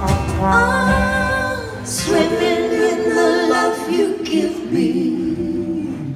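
Live band: a trumpet holds a note for the first couple of seconds, then wordless singing by several voices, lead and backing, takes over with vibrato.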